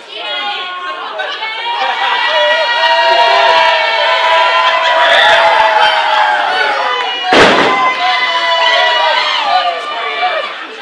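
A wrestling crowd of children and adults shouting and cheering, many voices at once, growing louder after a couple of seconds. One sharp, loud smack comes about seven and a half seconds in.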